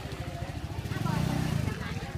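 A small engine, likely a motorcycle, idling with a steady low pulse, with a man's voice speaking over it about a second in.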